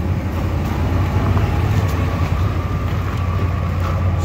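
Ram 1500 pickup's engine idling steadily after a remote start, a low, even hum.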